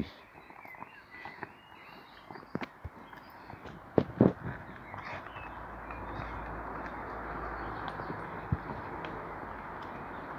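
A border collie handling a plastic frisbee on stone paving: scattered light taps and scrapes of claws and frisbee on stone, with two louder knocks about four seconds in. A steady hiss builds in the second half.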